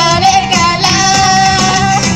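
Girl idol group singing live into handheld microphones over a pop backing track played through PA speakers; the lead voice holds one long steady note through the second half.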